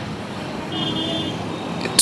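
Street traffic noise from passing vehicles, with a brief high-pitched tone near the middle.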